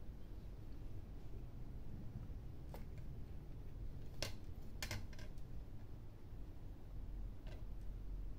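A handful of light clicks and taps from hands handling thread and small clear plastic craft pieces, a few close together about halfway through and one more near the end, over a low steady room hum.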